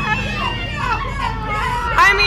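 Excited, high-pitched women's voices shrieking and calling out with no clear words.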